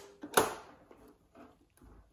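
One sharp click from the controls of a JVC RC-M70 boombox being worked by hand, about a third of a second in, followed by a few faint ticks as the switches and sliders are tried.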